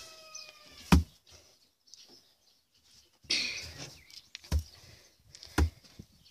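Rabbit thumping its hind feet on the wooden hutch floor: three sharp, deep thuds, about a second in and twice near the end. A brief rustle of hay falls between them.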